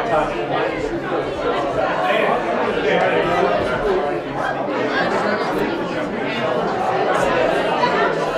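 Many people chatting at once in a large room: overlapping conversations and greetings with no single voice standing out.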